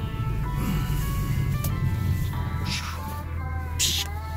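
Music with held, shifting melodic notes, over the steady low rumble of a Ford Mustang's engine running at low speed.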